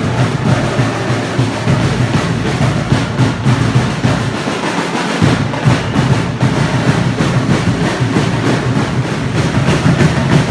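Loud, fast drumming with a steady, driving beat: percussion for a troupe of dancers in Dinagyang-style tribal festival costume.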